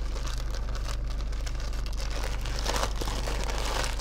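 Plastic courier mailer bag crinkling and rustling as it is pulled and torn open, with a louder tear about three seconds in, over a steady low hum.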